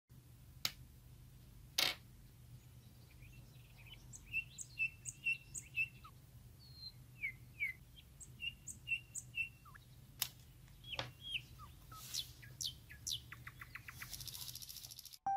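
Small birds chirping in runs of short, quick notes, with two sharp clicks in the first two seconds and a quick run of ticks near the end.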